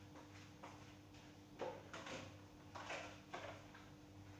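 Faint knocks and clatters of a kitchen cupboard and plastic food containers being handled while someone fetches a Tupperware, with a few short bangs from about one and a half seconds in. A steady low hum runs underneath.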